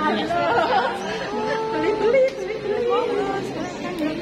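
Indistinct chatter of several women talking at once, their voices overlapping.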